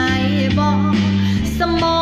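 A woman singing along to a backing track with guitar, the accompaniment's low notes changing about one and a half seconds in.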